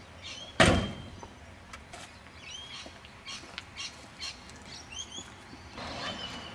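A DeLorean DMC-12's gull-wing door shut with one loud thud about half a second in. Birds chirp throughout.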